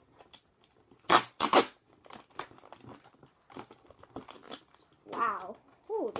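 Cardboard packaging being torn and crinkled as hands pry a tightly packed item out of the side of a box. There are two loud tearing rips about a second in, then smaller scattered crinkles and rustles.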